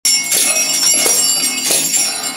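Free-improvised music: ringing metal percussion with high, lasting overtones, struck irregularly about once or twice a second.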